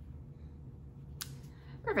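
Quiet room tone with a single short, sharp click a little after a second in; a woman's voice starts at the very end.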